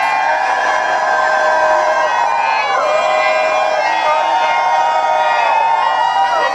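A crowd of kirtan devotees raising a long, pitched group cry of many voices together. The cry falls in pitch about three seconds in and again near the end.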